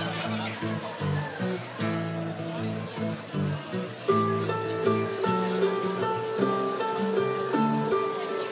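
Folk ensemble of acoustic guitar, harp, violin and cello playing live; plucked guitar and harp notes in the first half, with a sustained, stepping melody line entering about four seconds in.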